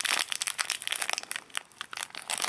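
A plastic candy wrapper crinkling in the fingers as it is handled and turned over, with a short lull near the end.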